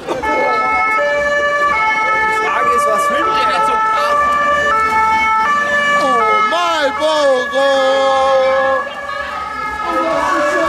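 German two-tone Martinshorn siren on a Red Cross emergency doctor's car responding with blue lights, alternating high and low tones about every 0.7 seconds. Around six to seven seconds in, the tones bend and waver in pitch before the steady alternation returns.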